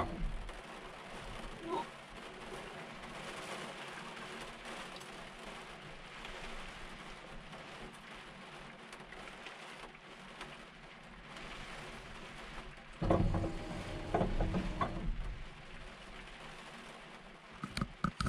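Rain pattering steadily on the glass and roof of an excavator cab. About 13 seconds in, a louder low sound rises over it for roughly two seconds.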